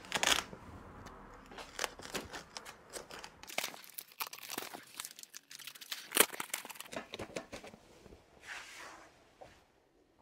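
A fabric egg-crate grid being fitted onto a softbox: irregular rasping tears of hook-and-loop fastener and cloth rustling as the edges are pressed on and pulled around the corners. There is a sharp snap about six seconds in, and the handling stops about a second before the end.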